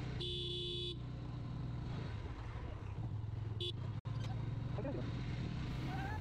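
Sport motorcycle engine running at low revs during a slow ride, with a short vehicle horn beep lasting under a second near the start.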